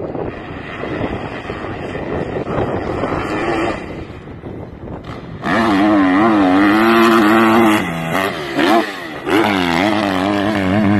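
Dirt bike engine revving on a sand track, at first fainter under a rushing noise, then loud from about halfway, its pitch wavering as the throttle opens and closes. It drops off briefly near the end and picks up again.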